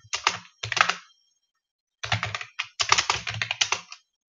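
Typing on a computer keyboard: a short run of keystrokes, a pause of about a second, then a longer, quicker run of keystrokes.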